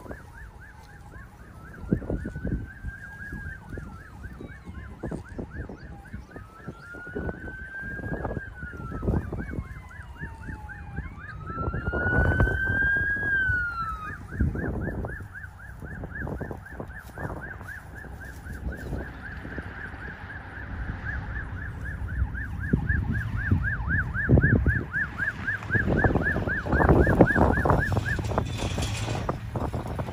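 Emergency vehicle sirens responding to a structure fire: one siren in a fast yelp that cuts off near the end, and a second in a slow rising-and-falling wail, three times in the first half. Gusty wind buffets the microphone.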